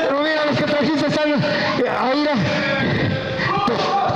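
Several men's voices shouting and calling out over one another, unamplified and unclear, with music underneath.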